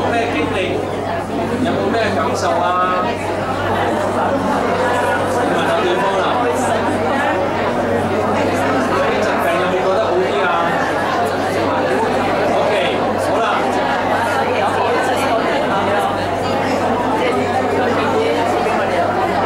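Many people praying aloud at the same time, their voices overlapping into steady, continuous chatter.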